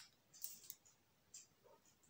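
Near silence with faint handling noise from a glass dropper bottle of face serum: a small click at the start, then a few soft brief rustles.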